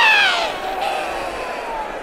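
Cartoon sound effect: one long pitched cry that starts loud and slides slowly down in pitch as it fades, as a knocked-out animated boxer lies flat.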